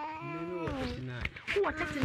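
Voices: a long, drawn-out, wavering 'mm… oh' exclamation, with a second, lower voice overlapping it in the first second.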